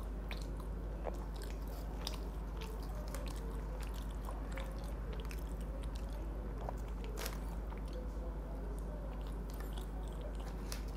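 Close-miked chewing and biting of cereal-coated fried chicken, with many small scattered crunches and clicks over a steady low hum.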